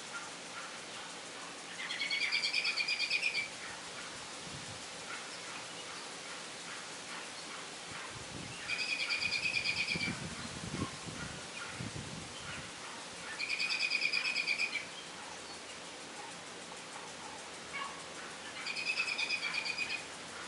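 A songbird singing a short, rapid trill about a second and a half long, four times with pauses of several seconds between, over a steady background hiss.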